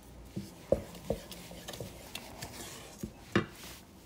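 Granulated sugar poured from a measuring cup into a stainless steel pot of cooked rice, with several light knocks of kitchenware against the pot. The sharpest knock comes about three and a half seconds in.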